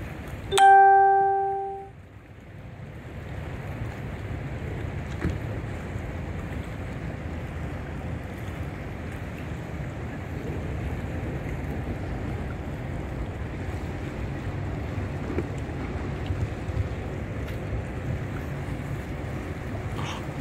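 One short, loud horn blast from a passing lake freighter, starting about half a second in and lasting just over a second. It is followed by a steady low rumble.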